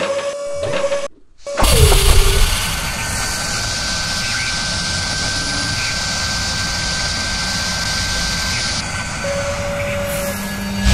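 Sound effects for an animated intro. A whoosh breaks off about a second in, and a heavy hit with a falling tone follows. Then a steady high-pitched whine runs over a loud hiss, in the manner of a high-speed drilling spindle cutting metal, and eases near the end.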